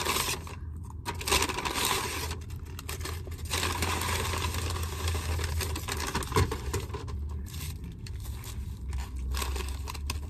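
Brown paper bag rustling and crinkling close to the microphone as it is opened and a paper-wrapped food item is taken out, with irregular pauses, over a steady low hum.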